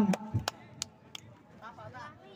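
Faint, high-pitched voices of children calling out across a football pitch, with a few sharp clicks in the first second.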